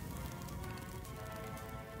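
Quiet background score with held, sustained tones, over a steady, fine crackling noise like rain or fire from an ambience track.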